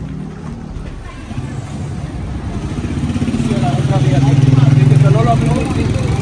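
A motor vehicle engine running close by with a rapid low pulse. It grows louder from about a second and a half in and eases off near the end. Voices can be heard over it.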